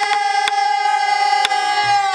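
Pansori singers holding one long note together, the pitch starting to sag near the end, with a few sharp knocks of a buk barrel drum's stick marking the rhythm.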